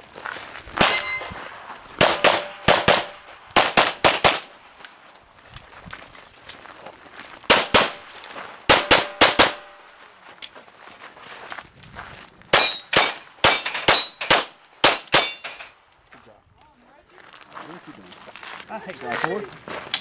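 Rapid pistol fire from a 9mm Glock 34, in quick strings of pairs and bursts with short gaps between groups, several shots followed by a brief metallic ringing tone. The firing stops a few seconds before the end.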